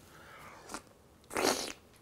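A clam being slurped from its shell: a faint click, then one short sucking slurp about a second and a half in.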